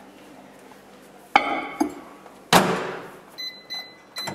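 A glass Pyrex measuring jug clinks down inside a Sharp microwave oven, the microwave door shuts with a thud, and then the keypad gives a few short beeps as the heating time is keyed in.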